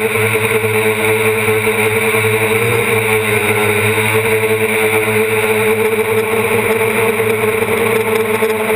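DJI Flame Wheel 450 quadcopter's brushless motors and propellers running steadily in flight, heard up close from a camera mounted on the frame: a constant buzzing hum with one strong pitch that wavers slightly.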